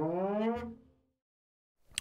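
Bass note from the UJAM Virtual Bassist Mellow plugin sliding upward in pitch and dying away within the first second, a key-switched slide articulation; then silence until another sliding note starts right at the end.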